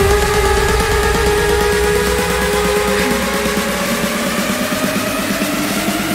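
Future rave electronic dance music in a build-up: a held synth chord slowly rising in pitch over a fast pulsing rhythm, with the deep bass dropping away partway through.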